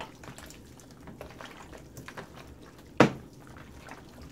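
Hands squishing and kneading seasoned raw oxtail pieces in a bowl: soft, irregular wet squelches and smacks, with one sharp knock about three seconds in.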